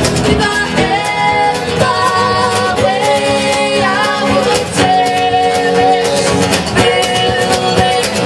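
Live acoustic band playing: a woman singing lead, with held, slightly wavering notes, over strummed acoustic guitars, upright bass and drums.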